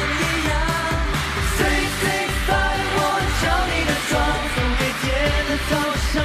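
Young male voices singing a Mandarin pop song into microphones over a backing track with a steady beat.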